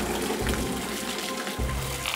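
Steady rush of a fountain jet splashing into a swimming pool, with soft background music and its low held notes.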